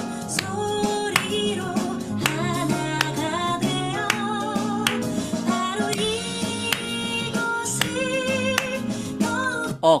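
A recorded pop ballad playing: a woman singing with instrumental backing at a steady groove.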